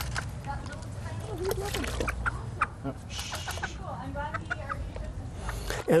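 A hen clucking in short calls while she is held and washed in a bucket of soapy water, with a brief splash of water about three seconds in.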